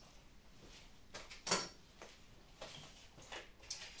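A few faint, scattered knocks and clicks of things being handled on a workbench, the sharpest about a second and a half in.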